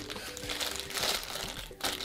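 Crinkling of a Funko Mystery Minis foil blind bag as it is squeezed and turned in the hands before being cut open.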